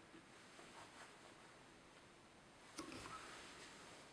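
Near silence, with a few faint clicks and one slightly louder snip a little under three seconds in: small fly-tying scissors trimming a mallard breast-feather hackle on a dry fly.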